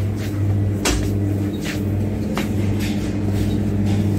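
Shop background: a steady low electrical hum, with four sharp knocks spaced roughly a second apart.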